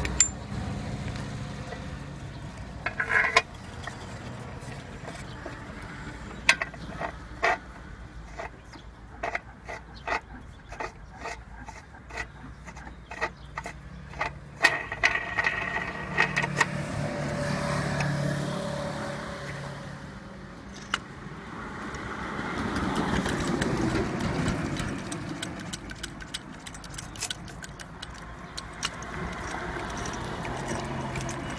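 Steel dies and a steel plate of a hydraulic punching set clinking and tapping as they are handled and set in place, a run of sharp metallic clicks over a steady hum of passing traffic that swells twice.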